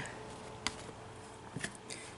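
Quiet handling of cardboard CD sleeves in a box: one sharp tap about a third of the way in, then a few light clicks near the end, over faint room tone.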